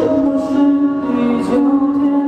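Live pop song: a male singer holding long notes into a handheld microphone, accompanied by a strummed acoustic guitar.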